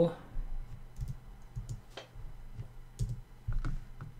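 Computer keyboard keystrokes: a handful of separate key clicks spaced irregularly, a short word being typed and entered.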